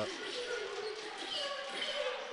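Court sound of a live basketball game: a ball bouncing on the hardwood amid faint arena voices and crowd murmur.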